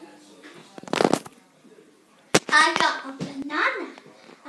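A child's high-pitched voice in two short phrases in the second half, after a brief rustling crackle about a second in and a sharp click just before the voice.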